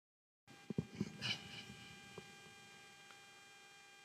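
Soft rustling and a few light knocks as a cap is adjusted right over a headset microphone, in the first second or so. Then a faint steady electrical hum from the microphone and sound system.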